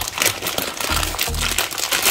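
Crinkling of a plastic instant-noodle packet as it is pulled open by hand, over background music with a steady beat.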